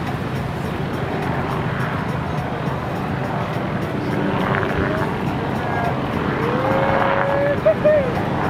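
Steady low rumble of wind and breaking surf. Near the end a person gives one long, slightly rising whoop.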